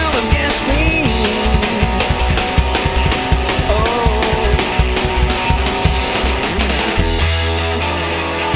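A rockabilly trio plays an instrumental passage: electric hollow-body guitar lead with bent notes over upright bass and a fast, steady drum beat. Near the end the band lands on a held chord.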